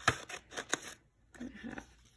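Scissors snipping through marker-coloured sketchbook paper, two short sharp cuts within the first second.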